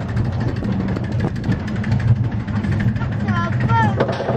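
Small roller-coaster train running along its track: a steady low rumble with a fast metallic rattle. Near the end come a few short high squeals that rise and fall.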